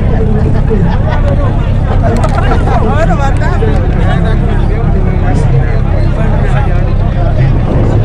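An engine idling steadily at an even low pitch, under the excited chatter of a crowd of voices.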